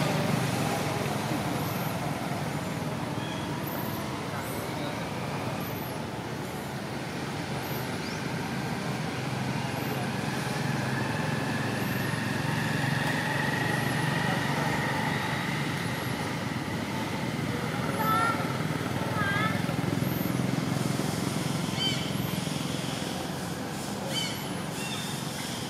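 Steady outdoor background noise with a short, high chirp repeating about every one and a half seconds, and a brief wavering call about three-quarters of the way through.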